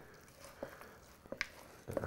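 Wooden spoon stirring wet, shaggy bread dough in a plastic mixing bowl: faint stirring with a few soft clicks.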